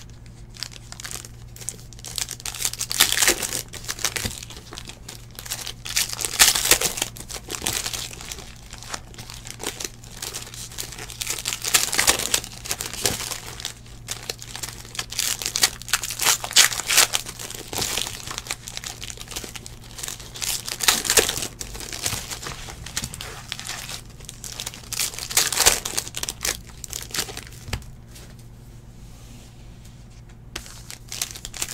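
Foil wrappers of 2018 Donruss Football card packs being torn open and crumpled by hand, in about six bursts of crinkling spaced roughly four to five seconds apart.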